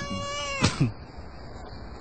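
A cat meowing: one drawn-out meow that falls in pitch at its end, followed by a brief click.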